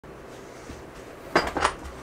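Two sharp clattering knocks about a quarter of a second apart, a little past halfway through, as an office chair is grabbed and moved.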